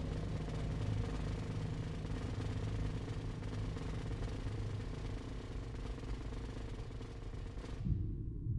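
Snare drum played in a sustained fast roll that cuts off suddenly near the end, over a low steady drone.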